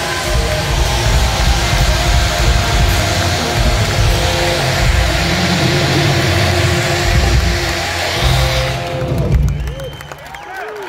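Live band music with bass and keyboards, overlaid by a loud, steady hiss from a stage CO2 jet blasting a column of vapour. The hiss dies away about nine seconds in, and the music drops lower at the end.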